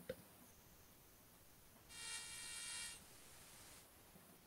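Near silence with a faint room hiss, broken about two seconds in by a buzzing tone that lasts about a second.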